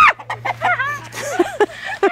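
Rooster giving a run of short clucking calls, several in quick succession, while it squares up to a person at close range.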